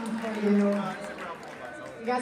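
Voices talking in a crowded room: one voice draws out a sound in the first second, then a quieter murmur of voices.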